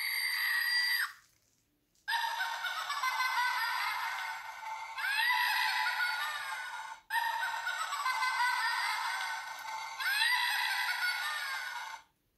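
Small speaker in a battery-operated toy witch doll: a shrill squeal that stops about a second in, then a recorded laughing voice lasting about five seconds, played twice in a row. The sound is thin and tinny, with no bass.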